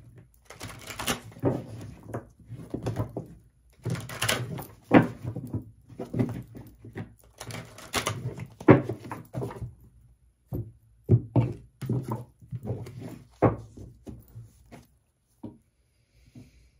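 Tarot cards being shuffled by hand: irregular rustles and slaps of the cards with soft thumps, one or two a second, stopping just before the end.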